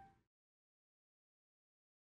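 Near silence: digital silence after the last trace of a violin passage dies away at the very start.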